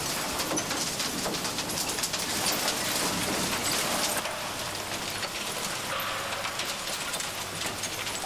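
Industrial waste mixer running, refuse tumbling and clattering inside it over a steady low machine hum, as the pre-treated waste is blended; the rattling eases a little about halfway through.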